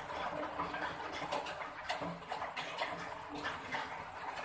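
A cat eating, with irregular wet, crackly chewing and smacking sounds.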